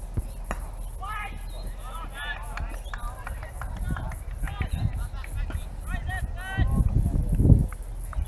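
Spectators talking indistinctly close to the microphone, with a brief low rumble near the end.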